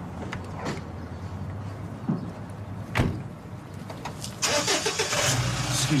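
A car engine running, getting much louder about four and a half seconds in, with a single knock about three seconds in.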